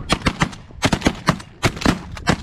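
A rapid, uneven volley of shotgun shots, about ten in two seconds, as several waterfowl hunters open fire on geese at close range.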